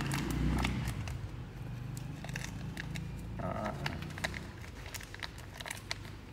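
Small crackles and clicks of hands rolling and pressing a rice-paper roll stuffed with crispy fried giant gourami and herbs, over a steady low hum.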